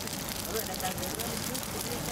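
Murtabak and roti canai frying on an oiled flat griddle: a steady, even sizzle, with faint voices in the background.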